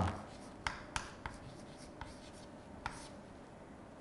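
Writing on a green board: soft strokes of the pen with a scatter of short, sharp taps as the letters are put down.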